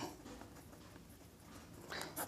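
Faint scratching of a ballpoint pen writing on paper.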